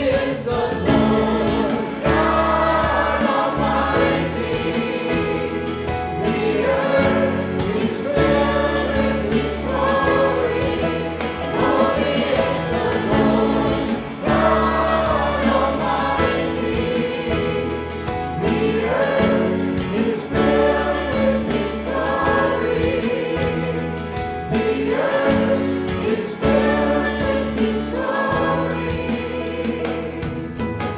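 A church choir and worship leaders singing a worship song together, backed by piano and a band with electric guitar and bass.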